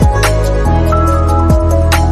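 Electronic background music: sustained synth notes over deep bass-drum hits and sharp percussion strikes.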